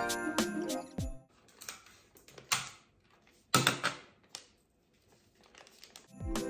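Background music with a beat stops about a second in. After that, a paper tablecloth used as wrapping paper rustles and crinkles in several short bursts as it is folded and pressed around a gift box, the loudest about halfway through.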